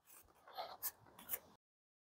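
Near silence with a few faint, brief rubbing sounds as polystyrene and plastic hive box parts are pressed together by hand. The sound drops out completely near the end.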